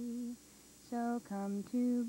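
A woman's voice singing a slow jingle melody in long held notes, with a short break about half a second in and a few quick stepping notes before the next held note.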